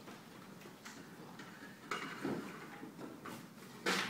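Faint stage noise from a band settling between pieces: scattered light clicks and knocks of brass instruments and stands being handled, with a sharper knock near the end.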